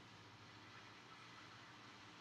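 Near silence: faint steady room hiss, with the faint scratch of a Sharpie felt-tip marker drawing on paper.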